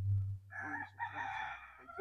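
A rooster crowing: one long call starting about half a second in, with a brief dip near the middle. A low steady hum stops just before it begins.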